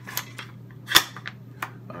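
Metallic handling sounds from an AR-15 pistol: one sharp, loud click about halfway through, with lighter clicks and taps before and after it.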